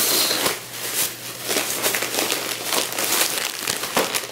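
A thin plastic shopping bag and candy wrappers crinkling and rustling as hands dig through them and lift out packages, in a dense run of small crackles.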